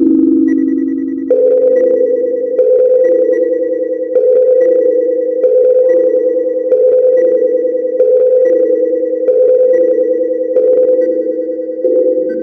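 Experimental electronic music: a frozen, resonator-filtered loop from GRM Freeze and Reson, pulsing about every 1.3 s. Each pulse starts sharply and rings on in sustained pitched tones under a thin, steady high tone. A second high tone joins near the end.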